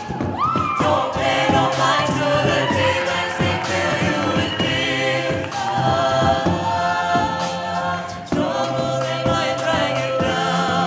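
Mixed-voice a cappella group singing sustained close-harmony chords, amplified through handheld microphones. The chord breaks off briefly a little after eight seconds and comes straight back in.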